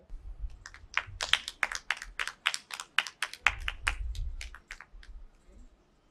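A small group clapping: separate, uneven claps, a few a second, that thin out and stop about five seconds in.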